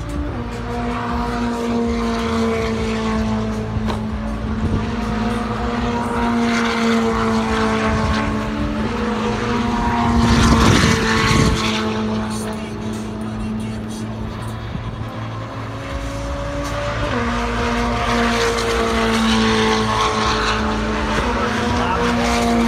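A steady engine drone with a strong pitched hum, its pitch shifting abruptly a few times, and a louder rushing swell about halfway through.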